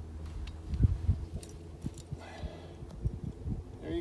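Low, steady wind rumble on the microphone, with a few light knocks and scrapes from a metal hammock stand being worked down into soft sand. The loudest knock comes about a second in.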